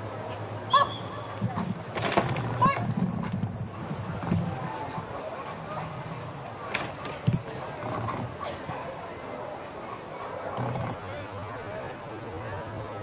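Indistinct voices over a steady outdoor background noise, with a few short high-pitched calls about a second in and again between two and three seconds in.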